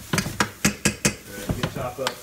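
Spoon clicking and scraping against a nonstick skillet as crumbled soy taco meat is stirred quickly in hot fat: a run of sharp knocks about four a second over a light sizzle.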